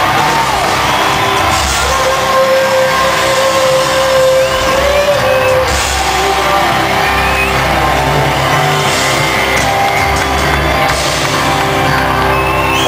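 Post-grunge rock band playing live through a PA: distorted electric guitars, bass and drums, loud and steady, as heard from the audience in an open-air amphitheatre.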